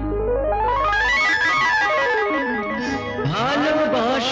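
Instrumental interlude of a Bengali film song: a keyboard plays a quick run of even notes climbing up a scale and stepping back down over a held bass note. Sliding, gliding notes come in near the end.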